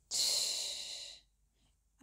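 A person's audible breath out, a sigh-like hiss lasting about a second that fades away.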